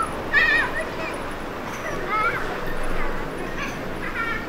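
Busy street background with several short, high, wavering calls a second or so apart, like a small dog whining and yipping.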